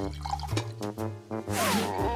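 Cartoon background music with a dripping, pouring sound effect as a hot drink is poured from a pot into cups. Near the end comes a brief loud whoosh.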